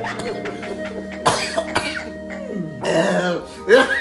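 A man's short, strained vocal outbursts, like coughs or sobs, come about a second in and again twice near the end. Background music with steady held tones plays underneath throughout.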